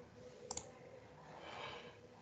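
A quick double click about half a second in, over faint background noise.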